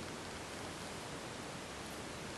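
Steady, even hiss of room tone and microphone noise, with no distinct events.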